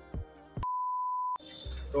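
Background music interrupted about half a second in by a single steady, pure beep lasting under a second, with the music cut out completely while it sounds; the music comes back after it and a man's voice starts right at the end.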